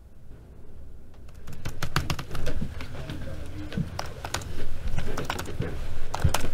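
Classroom desk noise from students working on laptops: a busy run of clicks and taps from laptop keys and laptops being handled on desks, with a couple of louder knocks. It starts about a second and a half in, after a low steady hum.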